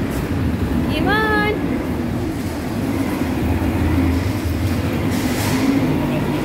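Metal shopping trolley rolling over a concrete floor: a steady rattling rumble from its wheels and wire frame. About a second in, a child gives one short high-pitched call.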